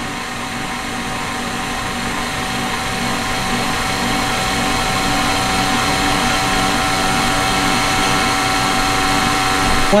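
Electric tilt-head stand mixer running steadily with a constant motor whine, whipping egg whites at a reduced speed while hot sugar syrup is poured in, a stage of making nougat; it grows slightly louder over the span.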